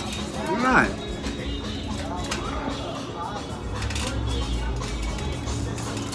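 Outdoor café ambience with background music, a short vocal sound under a second in, and a low rumble of passing street traffic from about four seconds in.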